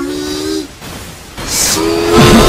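Cartoon fight sound effects and score: a held, pitched tone that cuts off about a third of the way in, then a short whoosh near the end as a new held tone starts, leading into the punch.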